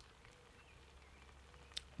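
Near silence: faint outdoor background, broken by one short click shortly before the end.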